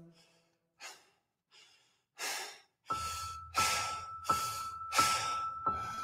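Music cuts off, and near silence follows, broken by two or three faint breaths. About three seconds in, a held high tone and a low hum start under rhythmic heavy breathing, one breath about every two-thirds of a second, as the quiet opening of a new section of the song.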